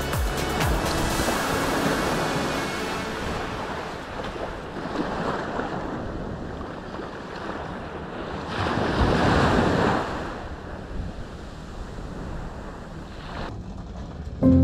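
Small waves breaking and washing up a sandy shore, with wind buffeting the microphone; the surf surges loudest about nine seconds in.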